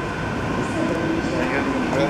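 Airport terminal hall ambience: a steady hum with a faint constant tone, and indistinct voices in the background from about a third of the way in.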